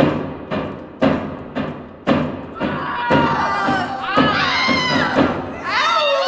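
A deep drum beating steadily about twice a second; about halfway in, a group of children's voices joins it in a long, rising and falling shout.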